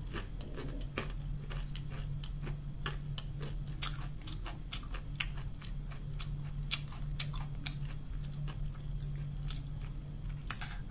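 Close-miked chewing of a mouthful of food, many small irregular clicks and crunches, with one sharper click about four seconds in. A steady low hum runs underneath.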